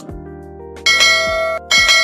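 Two bright bell chimes, a notification-bell sound effect, struck about a second in and again near the end and left ringing, over background music with low bass notes.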